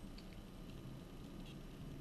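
Faint, irregular small ticks and clicks from a plastic soft-bait package being handled and turned in the hands, over a low steady room hum.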